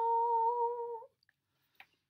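A woman's voice holding one steady sung note, the last word 'snow' of a sung line, for about a second before it stops abruptly. A faint click follows near the end.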